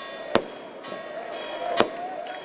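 Aerial fireworks exploding: two sharp bangs about a second and a half apart.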